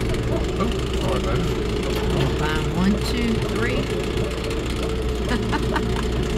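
Farm utility vehicle's engine running steadily, a continuous low hum.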